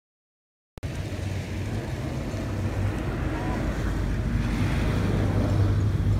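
Steady low hum of a boat's motor, with wind buffeting the microphone and water noise over it, cutting in abruptly about a second in after digital silence.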